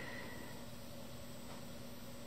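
Quiet, steady hiss with a faint low hum: room tone.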